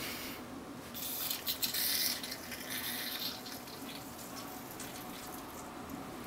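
Gas hissing out as the screw cap of a plastic bottle of frozen cola is loosened, from about a second in, easing off after about three seconds into a faint fizz.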